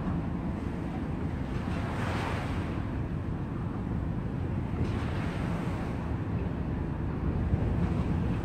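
Small waves washing onto a sandy river bank, two swells of splashing hiss about 2 and 5 seconds in, over a steady low wind rumble on the microphone.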